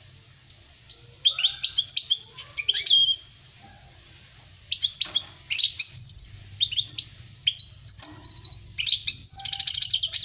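European goldfinch song: quick twittering phrases of high chirps mixed with buzzy trills. One burst starts about a second in, and after a short pause a longer, denser stretch follows from about five seconds in.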